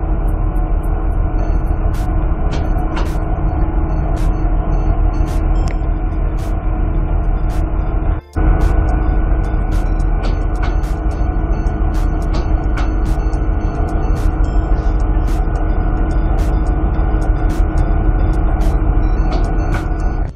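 Steady low rumble of a trawler's engines and deck machinery, with a constant hum and scattered sharp clicks. The sound drops out for a moment about eight seconds in.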